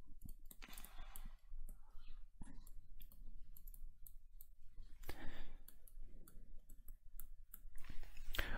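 Stylus tip tapping and scratching on a tablet screen while handwriting numbers: a run of light, irregular clicks.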